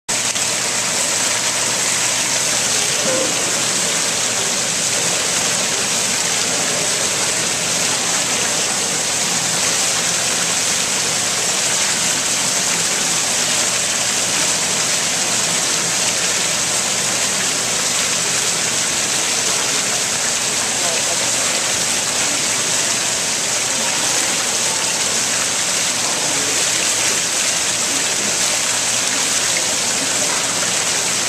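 Tiered fountain: water pouring in a curtain off the rim of a stone basin and splashing into the pool below, a steady, unbroken rush.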